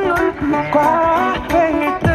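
A singer singing a K-pop cover live over a backing track, the voice moving through short phrases.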